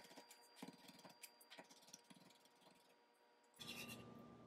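Near silence, with a few faint, irregular taps of a chef's knife on a plastic cutting board, chopping fresh oregano leaves, over the first couple of seconds.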